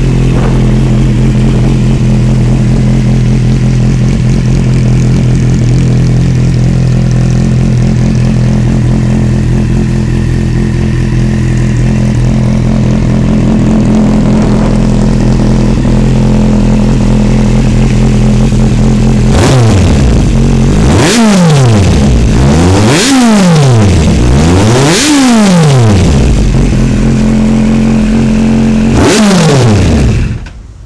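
Kawasaki Z800 inline-four through a Yoshimura carbon replica slip-on exhaust, idling steadily and then revved in four quick throttle blips near the end, the pitch rising and falling each time.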